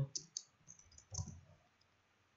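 Computer keyboard keys tapped in a quick run of light clicks, a handful of keystrokes mostly in the first half.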